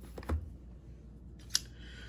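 Quiet handling sounds from a shrink-wrapped cardboard box and a pair of scissors being moved and set down on a tabletop: a soft low thump early on and one sharp click about a second and a half in.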